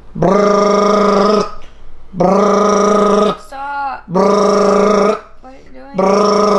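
A man imitating an alarm clock with his voice: a long, steady buzzing 'beep' held for about a second and repeated roughly every two seconds, four times. A short laugh or groan comes in between the third and fourth.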